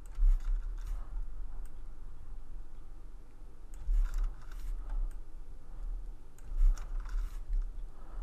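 Computer mouse buttons clicking in three short clusters of a few clicks each, over a steady low hum.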